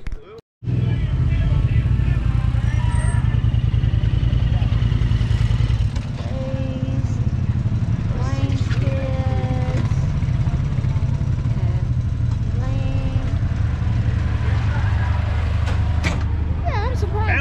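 Side-by-side UTV engine idling close by, running steadily at a low pitch; it drops slightly in level about six seconds in.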